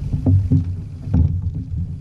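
Three knocks and bumps on a plastic fishing kayak's hull and fittings as gear beside the seat is handled, about a quarter second apart for the first two and the third just past a second in, over a steady low rumble.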